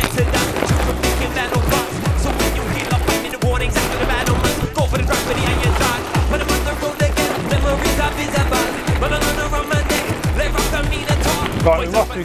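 Beatbox music with a steady beat, over the tyre noise of a mountain bike riding fast down a gravel trail.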